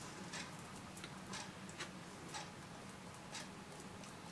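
A thin paintbrush being tapped to flick watercolour splatters onto card: about six light, irregularly spaced ticks over a faint steady hum.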